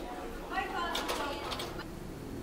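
A person's voice, briefly, starting about half a second in.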